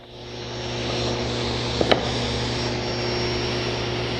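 SawStop table saw with a crosscut blade, running and cutting a board held in a miter gauge. The noise swells over the first second as the blade goes through the wood, then holds steady, with one brief sharp crack near two seconds in.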